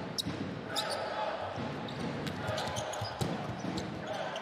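A basketball being dribbled on a hardwood court, with short sneaker squeaks and steady crowd noise and voices in the arena.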